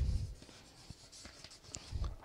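A pause in a man's spoken recitation. His voice trails off in the first moment, then comes a faint near-quiet with a few small ticks and a soft low sound near the end.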